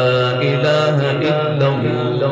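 A man reciting the Qur'an in a melodic, drawn-out tajweed chant, holding one long unbroken phrase with ornamented turns in pitch.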